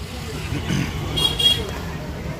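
Steady low rumble of road traffic, with a brief high-pitched sound about a second and a half in.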